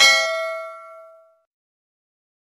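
Notification-bell chime sound effect of a subscribe-button animation: a bright ding of several ringing tones that fades out within about a second and a half.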